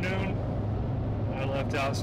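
Steady low rumble of a pickup truck driving at road speed, heard inside the cab, with a man talking briefly over it at the start and again near the end.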